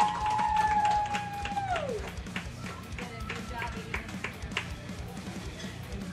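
A woman's long held high "woo" that slides down and stops about two seconds in, followed by music with a tapping beat.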